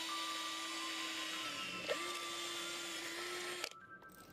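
Electric drill running a twist bit through a flat steel bar. The motor holds a steady pitch, dips briefly about halfway through, then stops shortly before the end.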